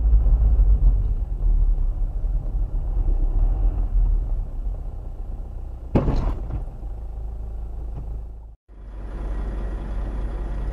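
Steady low rumble of a car's engine and road noise, heard from inside the cabin, with a sudden sharp thump about six seconds in. Near the end the sound cuts out for a moment and a similar steady rumble resumes.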